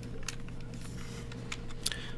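A few light, scattered clicks at a computer, from keys or controls being pressed to step through the charts, over a steady low electrical hum.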